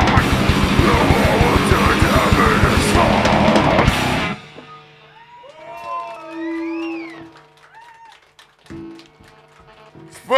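Live heavy rock band, with distorted electric guitars and a drum kit, playing fast and loud, then stopping abruptly about four seconds in. The rest is much quieter, with a few faint sliding tones and a short steady held tone.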